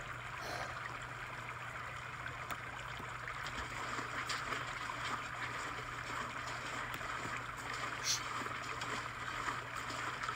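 A stream running steadily over stones in a forest ambience recording, with a few faint ticks scattered through it.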